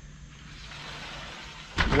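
Woodland ambience: a low, steady, high-pitched hiss of insects, with no distinct events.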